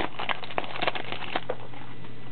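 Foil trading-card pack wrapper crinkling and crackling as it is torn open and the cards are pulled out: a quick run of short crackles that stops about one and a half seconds in.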